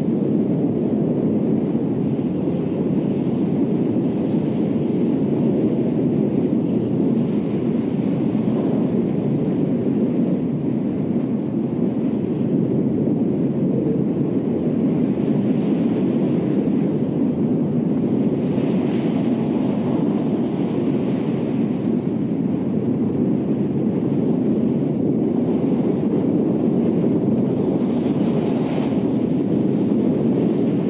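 Steady rushing storm wind, a low, dense noise of a tornado sound effect that swells slightly a few times.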